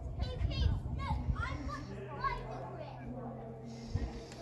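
Children's voices and chatter in the background, sliding up and down in pitch, over a steady low hum.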